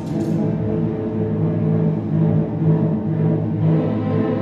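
Student string orchestra playing, the sound carried by low held notes from the cellos and double basses.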